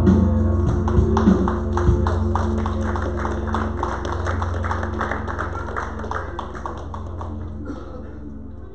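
Live worship band music winding down: a low chord held on the keyboard with a steady quick tapping rhythm over it, about three beats a second, the whole fading gradually as the song ends.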